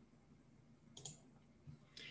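Near silence with a faint computer mouse click about a second in and a fainter click near the end.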